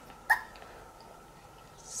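A single brief hiccup-like sound, most likely from the baby, about a third of a second in, then quiet room tone.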